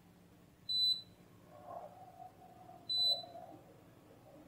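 A KAIWEETS KM601 digital multimeter's continuity buzzer beeps twice, about two seconds apart. Each beep is short and high-pitched and sounds as the test probes touch an IC pin and its adapter pad, showing that the solder joint connects.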